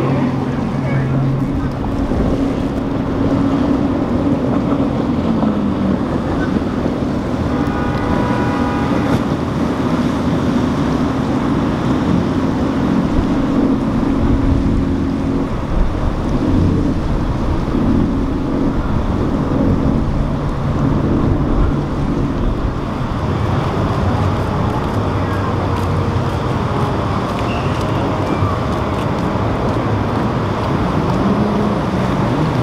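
Motor yachts' engines running as the boats pass at speed, with the wash of their hulls through the water and wind on the microphone. A brief pitched sound stands out about eight seconds in.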